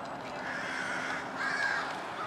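A bird calls twice with a harsh, noisy call, the second call about a second after the first, over a steady outdoor background.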